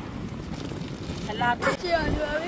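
Wind buffeting the microphone, with surf washing on the shore behind it; a brief voice near the end and a short sharp crackle just after it.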